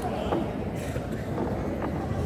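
Steady low rumble of crowd and room noise with faint murmured voices, and a light knock about a third of a second in.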